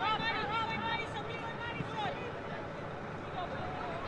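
High-pitched voices calling out during a girls' soccer match, several shouts in the first two seconds and fainter calls after, over steady outdoor noise.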